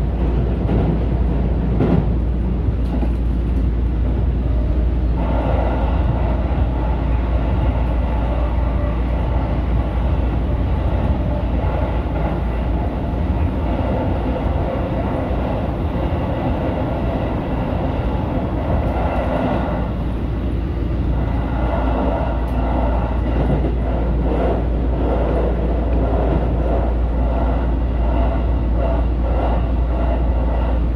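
JR Central 313 series electric train running at speed, heard from the driver's cab: a steady rumble of wheels on rail, with a motor hum coming in about five seconds in.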